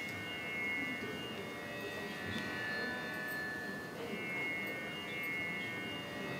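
Harmonium held softly on a steady drone, its reeds sounding a few sustained tones with no melody or rhythm.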